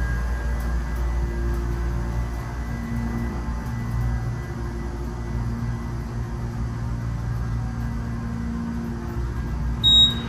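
Otis hydraulic elevator car travelling up: a steady low hum and rumble of the ride, with a short high electronic chime near the end.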